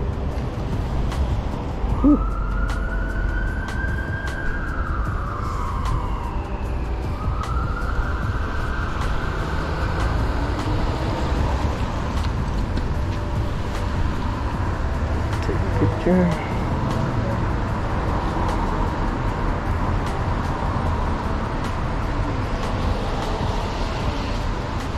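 An emergency vehicle siren wails in two slow rising-and-falling sweeps during the first ten seconds, then carries on fainter, over a steady low rumble of street traffic. Two short thumps stand out, one about two seconds in and one about two-thirds of the way through.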